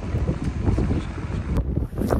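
Wind buffeting the phone's microphone, a low, gusting rumble.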